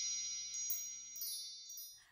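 Chime sound effect ringing out and fading away, with a few light tinkling strikes on top; it has died out just before the end.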